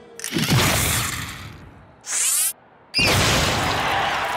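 Cartoon impact sound effects: a loud crash just after the start that dies away, a short high whistling glide about two seconds in, a brief silence, then another sudden loud crash about three seconds in.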